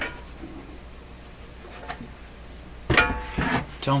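Aluminium-cased chassis of a vintage RF signal generator being tipped up onto its end on a wooden workbench: quiet handling, then about three seconds in a loud metal clunk with a brief rattle and ring.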